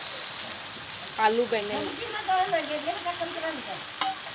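Cubed potatoes and aubergine frying in a kadhai on a gas stove, with a steady sizzle. A woman's voice speaks over it from about a second in.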